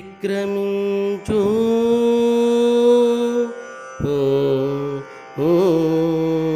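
A single voice singing a Telugu ataveladi padyam in the traditional drawn-out chanting style, holding long notes with slight wavers in pitch. The singing breaks off briefly about a second in, and again around four and five seconds in, between held phrases.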